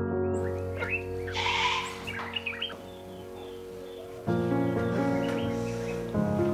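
Soft background music of sustained chords that thins out in the middle and swells again a little after four seconds in. Under it is outdoor ambience with a few birds chirping in the first half.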